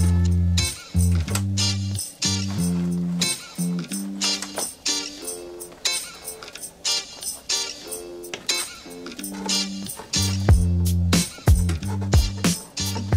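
Background music with a steady beat and a bass line of held low notes.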